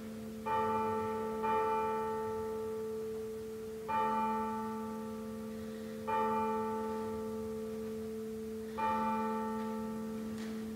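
A single church bell tolling, struck five times at uneven intervals, each stroke ringing on and dying away slowly before the next.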